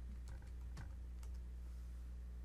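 A handful of faint computer keyboard keystrokes, typing the command to save the file and quit the vi editor, over a steady low hum.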